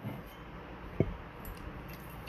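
Faint handling of a teapot over a ceramic bowl, with one light clink about a second in and a few small ticks after it. The pour of tea into the bowl begins near the end.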